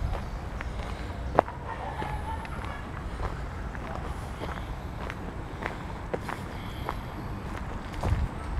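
Footsteps on a dirt path, short scuffs and crunches about every half second to second, over a low rumble. A faint distant voice is heard about two seconds in.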